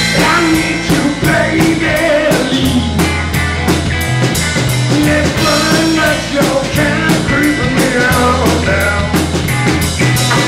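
Live rock-and-roll band playing: electric guitar, electric bass and drum kit with a steady beat, with bending melodic lines over the top.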